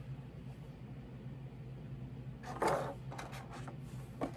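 A brief crinkle of thin plastic wrapping about two and a half seconds in, followed by a few small crackles, as a toy figure is pulled out of its plastic bag, over a faint steady room hum.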